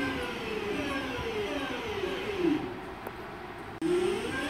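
Class 323 electric multiple unit accelerating away from the platform, its traction motors whining in several tones that slide down in pitch, then a new whine rising near the end.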